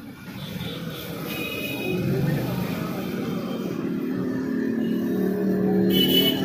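Street traffic with a vehicle engine running nearby, its steady hum growing louder after about two seconds, and voices in the background.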